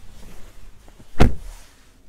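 One loud thump about a second in as someone climbs into the pickup's cab, with faint handling rustle around it.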